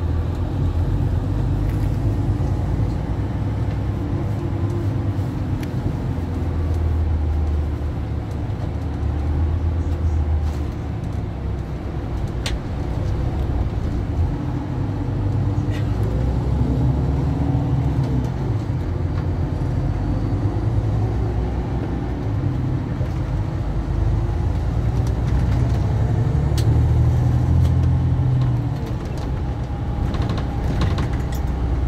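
Coach engine and road noise heard from inside the passenger cabin while under way: a steady low rumble whose pitch rises and falls slowly as the coach pulls away and eases off.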